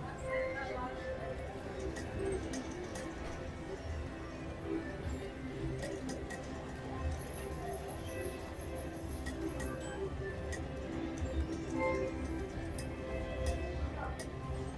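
Casino floor ambience of background music and distant voices, with the clicks of a mechanical-reel slot machine spinning and stopping several times in a row.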